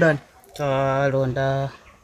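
Speech only: a man's voice, ending a word and then holding one drawn-out syllable at a steady pitch for about a second.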